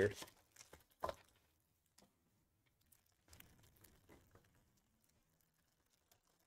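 Faint crinkling and rustling of foil trading-card pack wrappers being handled, with one short, sharper sound about a second in.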